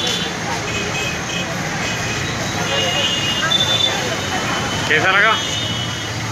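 Indistinct voices talking over steady background noise, with one voice wavering sharply in pitch about five seconds in.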